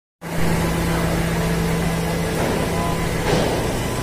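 Steady low drone of running machinery with constant background noise, cutting in abruptly a moment in.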